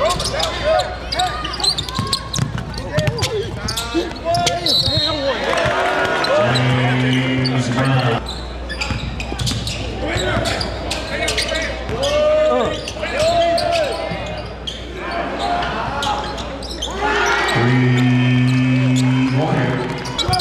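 Indoor basketball game sound: a basketball dribbling on the hardwood under the voices of players and crowd in a large gym. Twice, about a third of the way in and near the end, a low, steady scoreboard horn sounds for about two seconds.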